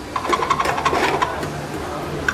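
Fast mechanical rattling with a steady buzzing tone, lasting about a second and then dying away.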